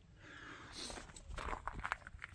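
Footsteps crunching on gravel and dry leaves: a few irregular steps in the second half, after a rustle of clothing and handling.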